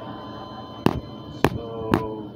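Cartoon soundtrack from a television with a steady electrical hum underneath. Three sharp clicks come about half a second apart in the second half, and a short falling voice sound comes near the end.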